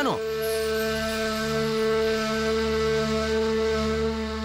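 Dramatic serial background music: a quick falling swoop, then one long held note with a wind-instrument sound.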